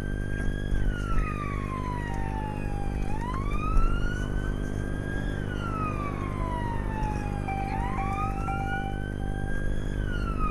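UK police car siren on its slow wail, gliding down and up twice, heard from inside the pursuing police car over a steady low drone of engine and road noise.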